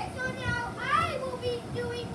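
A child's high-pitched voice calling out, with a quick rising whoop about a second in.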